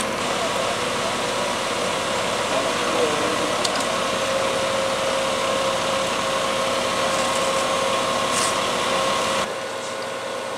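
Fire engine running at a standstill, a steady mechanical hum with a faint murmur of voices; the sound drops a little in level just before the end.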